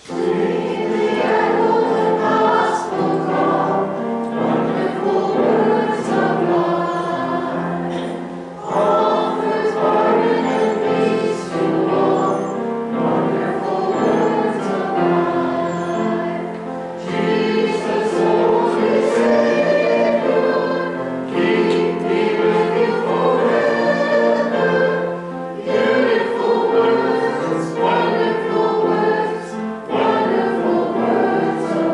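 Several voices singing a hymn together with keyboard accompaniment, in phrases broken by short pauses.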